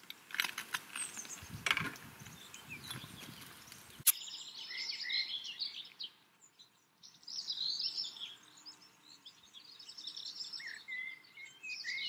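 A few clicks and knocks, ending in one sharp loud click about four seconds in, then several songbirds singing in short high chirps and warbles.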